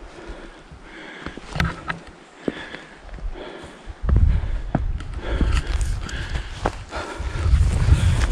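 Light rustling and a few clicks, then, about halfway through, wind suddenly starts buffeting the microphone with a low rumble, over footsteps through dry grass as the walking begins.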